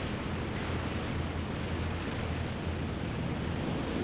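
Rescue launch running at speed through choppy sea: a steady rush of water and spray over a low engine hum.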